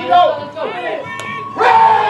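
A single sharp crack of a bat hitting a baseball about a second in, then spectators shouting and cheering, growing suddenly louder just after the hit. Scattered shouts from the crowd are heard before the hit as well.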